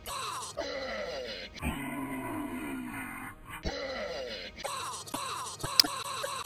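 A drawn-out groaning voice, edited into about six short pieces that repeat one after another. Each piece slides down in pitch and is cut off abruptly.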